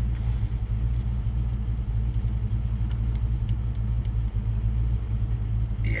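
Vehicle engine idling, a steady low drone heard from inside the cab, with a few faint ticks.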